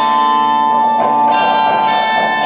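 Live rock band music: sustained, ringing chords with no drumbeat, a new chord coming in about a second in.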